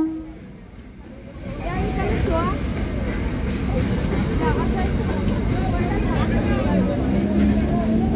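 A train horn cuts off at the very start. After a brief lull, many people talk on the platform over the low rumble of a train moving along it.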